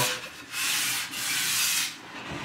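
Sandpaper rubbed over a car body panel in two back-and-forth strokes, the second longer, sanding the bodywork smooth for paint.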